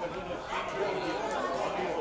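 Indistinct chatter of several voices talking over one another at a steady level.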